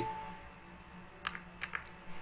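A quick run of four or five faint keystrokes on a computer keyboard, about a second in.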